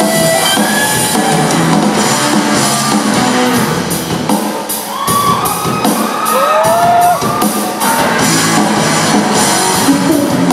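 Live rock band playing an instrumental stretch: electric guitars over a drum kit, loud and steady. From a few seconds in a cymbal beat keeps even time, and around the middle a few notes slide up and down in pitch.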